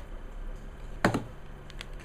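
Paper handling: a short, crisp paper tap or rustle about a second in as a printed card is handled, followed by a couple of fainter clicks.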